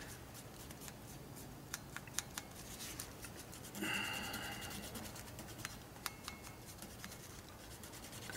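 Faint scratching and scattered light ticks of a swab rubbing black leather dye onto the edges of a cowhide piece, with a louder rubbing noise lasting about a second, around four seconds in.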